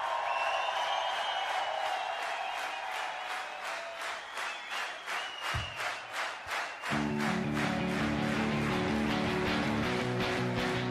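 Live rock concert: the crowd cheers over a rhythmic pulse that builds, then the band's electric guitars and bass come back in with full strummed chords about seven seconds in.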